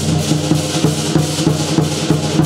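Vietnamese lion-dance drums beaten in a steady rhythm, about three strokes a second, under a continuous clash of hand cymbals.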